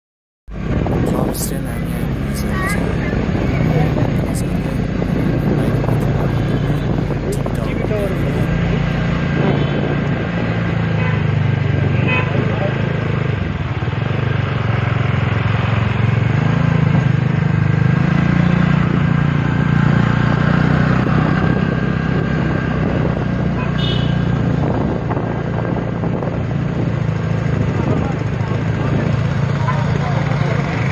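Busy town street traffic: motorcycle and car engines running, horns sounding now and then, and people's voices around.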